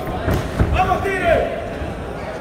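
A few dull thuds from a boxing exchange, gloves landing and feet on the ring canvas, with a man's short shouts over them.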